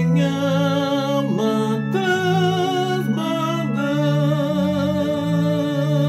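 A man singing a hymn solo in long held notes with vibrato, over a sustained instrumental accompaniment.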